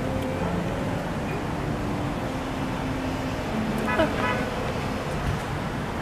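Steady road traffic noise from passing cars, with a short voice about four seconds in.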